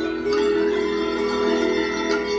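Music played on marimbas and bell-like mallet percussion, sustained chords that swell in loudness shortly after the start.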